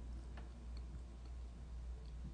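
Faint room tone: a steady low hum with a few soft, scattered clicks.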